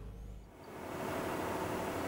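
Steady outdoor background noise, an even hiss that fades in about half a second in and holds.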